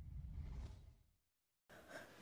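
Near silence: the last of a fading intro music bed with a faint breathy whoosh about half a second in, dropping to silence about a second in.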